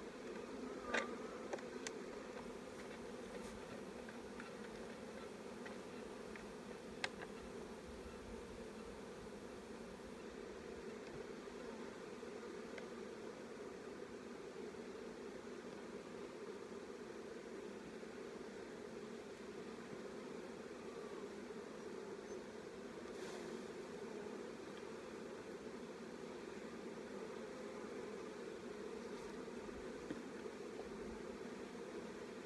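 A mass of honeybees buzzing steadily around an open hive, a low even drone. Two sharp clicks, about a second in and about seven seconds in, come from the wooden hive frames being handled.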